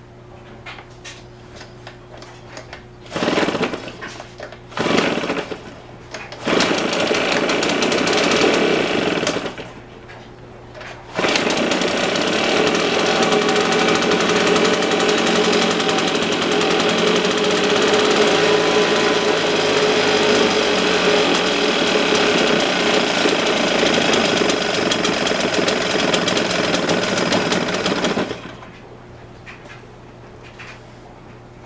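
Husqvarna 150BT backpack leaf blower's two-stroke engine, just rebuilt with a new piston and cylinder, being started: it catches for two short bursts, runs about three seconds and dies, then starts again and runs steadily for about seventeen seconds before cutting off.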